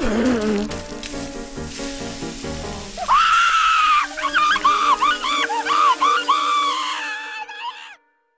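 Cartoon sound track: held music notes, then from about three seconds in a cartoon character's high-pitched scream of pain, one long cry followed by a run of shorter wailing cries over the music, stopping suddenly at the end.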